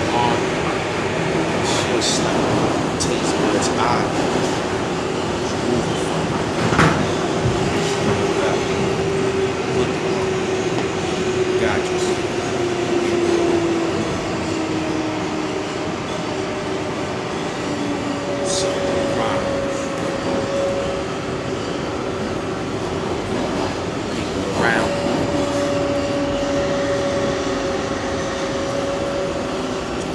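Subway car riding at speed: a steady rumble with a droning tone that slowly drifts in pitch, and a few sharp clicks now and then.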